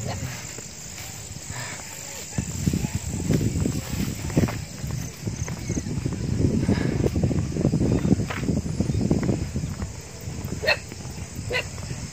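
Insects chirring faintly in the background at dusk, under uneven low rumbling noise on a phone microphone carried by a walking hiker.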